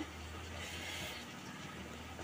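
Faint steady hiss with a low hum underneath: quiet background noise with no distinct event.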